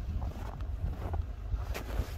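Wind rumbling on the microphone, with a few faint crunches of footsteps in snow.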